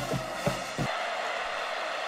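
Music with a few drum hits in the first second, then a steady wash of noise.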